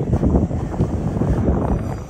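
Wind buffeting the phone's microphone, an uneven low rumble with gusts.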